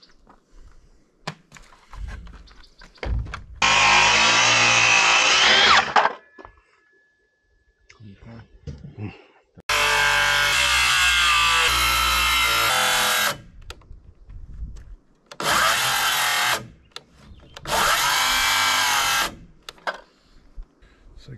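DeWalt cordless circular saw cutting through thick rough-cut lumber in four separate bursts, the longest a few seconds each. Its motor whine sags and recovers in pitch as the blade bites into the wood.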